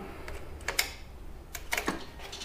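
Motorcycle ignition key being turned on: a couple of sharp clicks a little under a second in, then a quick run of clicks near the end.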